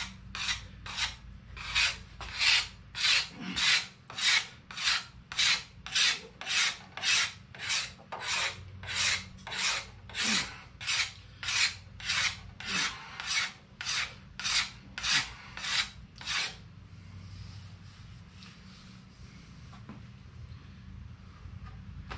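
Sharp-edged steel scraper drawn along a wooden ax handle in quick, even strokes, about two a second, shaving off lacquer and wood. The strokes stop about three-quarters of the way through.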